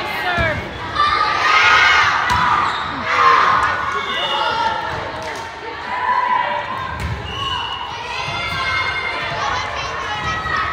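Volleyball rally in a large gym: a few sharp hits of the ball and bounces on the hardwood floor, with girls' shouts and cheering as the point is won.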